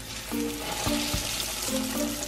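Cheese-stuffed plantain wrap in egg batter sizzling as it is slid into hot oil on a spatula and starts to deep-fry, the sizzle growing stronger as the oil bubbles up around it.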